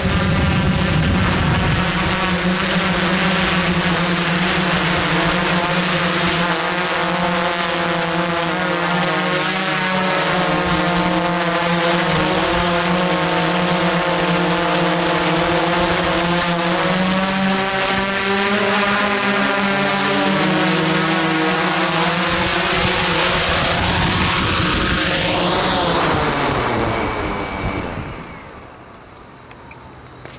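Remote-controlled camera drone's motors and propellers heard from the onboard camera, running steadily in flight with a wavering hum. Near the end the drone is down and the motors stop, and the sound drops away sharply.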